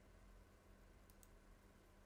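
Near silence: faint room tone with a steady low hum, and two quick faint computer-mouse clicks about a second in.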